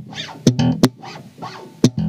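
Five-string Squier electric bass played with slap technique: a short phrase of three sharp slapped and popped notes, each ringing briefly in the low register.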